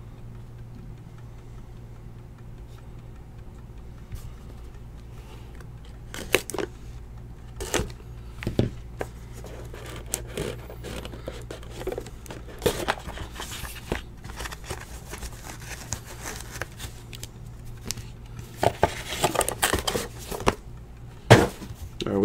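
Trading-card box and pack packaging being handled and opened: scattered crinkling and tearing of wrapper with sharp clicks of hard plastic card holders, quiet at first and busiest near the end, over a steady low room hum.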